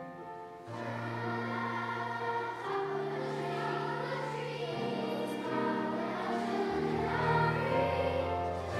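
A large children's choir singing together, the voices coming in under a second in over held accompaniment notes.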